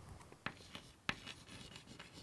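Chalk writing on a blackboard: faint scratching strokes, with two sharper taps of the chalk about half a second and a second in.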